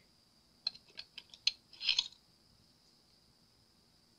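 A few light plastic clicks from handling a small needle-tip applicator and bottle, then one short spray hiss about two seconds in, as the needle tip is cleaned with alcohol.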